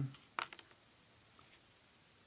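Small metal Meccano parts clinking as they are handled: one sharp clink about half a second in, followed by a few lighter clicks.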